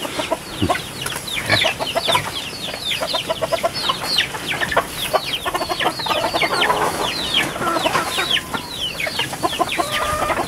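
A flock of chickens clucking and calling, with many short calls falling in pitch and overlapping throughout.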